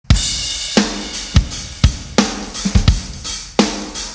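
Rock drum kit playing the opening beat of a blues-rock song: a crash cymbal hit right at the start, then kick and snare hits about twice a second under ringing cymbals.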